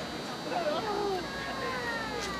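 Distant voices shouting and calling across a soccer field, several gliding calls overlapping, with longer drawn-out calls near the end.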